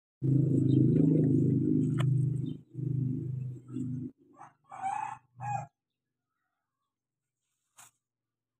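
Rooster crowing: a long loud call for the first few seconds, then a few shorter calls ending about five and a half seconds in.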